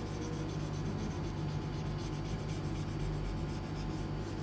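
A paper tortillon (blending stump) rubbing graphite shading into a paper tile, a steady scratchy rubbing with no breaks.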